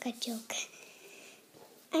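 A woman's soft speech, a single word, followed by a low pause in which a faint, steady high tone is heard after a small click.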